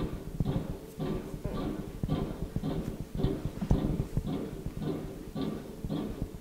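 What sounds like a band playing in the background, heard from inside a car: a steady beat of about two strokes a second with low pitched notes under it.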